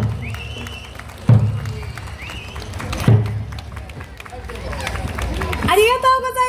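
Large Eisa barrel drums (ōdaiko) struck in slow single beats: three deep strikes about a second and a half apart. Crowd chatter runs underneath, with two short high held tones near the start.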